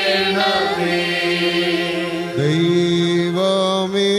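Syro-Malankara liturgical chant: voices sing long held notes over a steady keyboard drone. About two seconds in, a low male voice slides up into a sustained chanted note.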